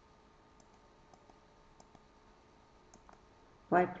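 Faint, scattered clicks from a computer pointing device while switching PowerPoint ink tools and erasing, about eight in all, over quiet room tone. A short spoken word comes in near the end.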